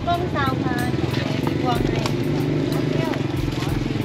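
Voices of people talking over a steady low engine hum, like a small motor running nearby.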